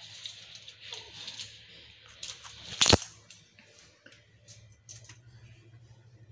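Quiet handling sounds of a tape measure and ceramic floor tile during measuring: a few light clicks and one sharp click about three seconds in.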